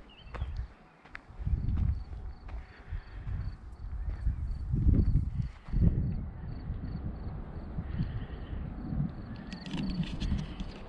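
Wind buffeting the microphone in irregular low gusts, strongest about halfway through. A faint high chirp repeats about three times a second underneath.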